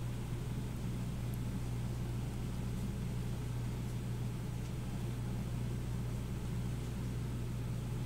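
A steady low hum throughout, with a few faint scratches of a felt-tip marker writing on paper.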